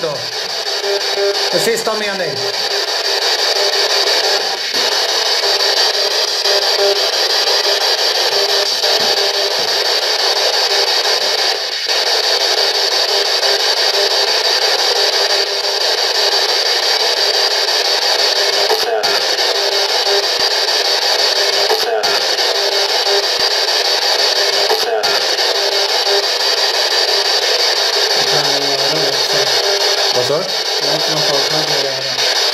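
Spirit box radio scanning: continuous radio static from a small speaker, with brief snatches of broadcast voices and a few faint clicks.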